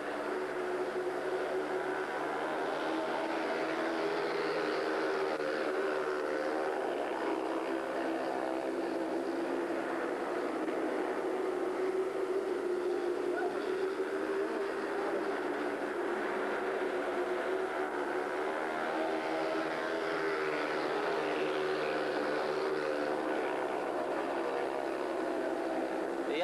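A field of speedway motorcycles, 500 cc single-cylinder racing engines, running hard together at high revs during a heat. The engine notes hold loud and steady, with their pitch wavering slightly as the bikes go round the track.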